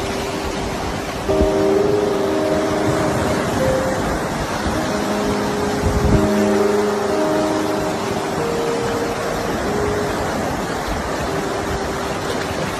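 Steady rush of shallow ocean surf washing in around the shore, with two low thumps about one and six seconds in.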